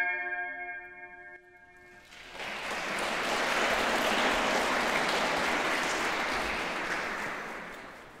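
The last chord of a flute ensemble dies away over the first second or so. About two seconds in, the audience starts applauding steadily, and the applause fades out near the end.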